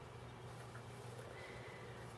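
Faint handling noise of two soft silicone menstrual cups being squeezed rim to rim in the hands, over a low steady hum.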